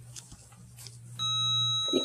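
KONE elevator landing arrival chime: a single electronic ding about a second in that rings on, announcing the car's arrival as the hall lantern lights. A low steady hum beneath it cuts off just before the end.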